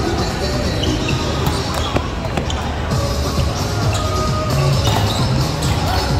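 A volleyball being struck and hitting the hard gym floor in a rally, a few sharp thumps that echo in the large hall, over background music and players' voices.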